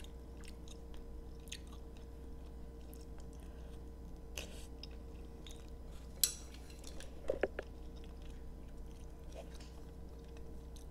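A person chewing a mouthful of creamy seafood alfredo pasta with soft, wet mouth clicks. A sharper click comes about six seconds in, and a short cluster of louder mouth sounds a second later.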